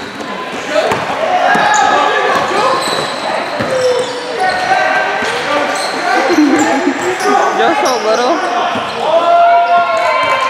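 Basketball bouncing on an indoor court floor during play, with players' voices calling out across the gym.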